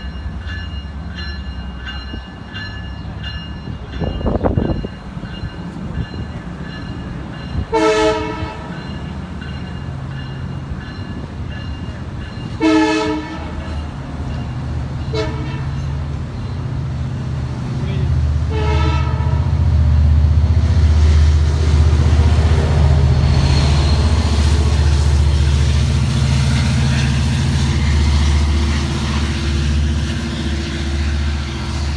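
Long Island Rail Road diesel train of bilevel coaches pulling out of a station: a repeated high ringing at first, then four horn blasts, the third one short. From about two-thirds of the way in, the locomotive's diesel engine rises into a loud, heavy low rumble as it throttles up to get the train moving.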